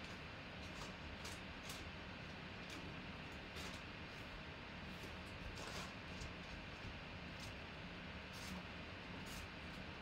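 Quiet room tone: a steady faint hiss with a few light, scattered clicks.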